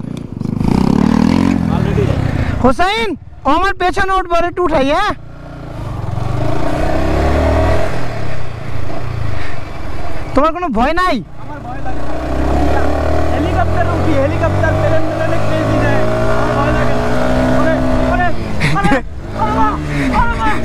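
Yamaha sport motorcycle's engine pulling away and running in low gear, revs rising and falling, then climbing steadily in pitch over several seconds in the second half. Voices are heard briefly twice.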